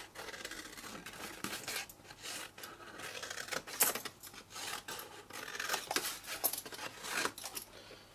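Scissors cutting through thick cardstock in a run of irregular snips, with the card rubbing and rustling as it is turned, while wedges are cut from the scored flaps of a box base.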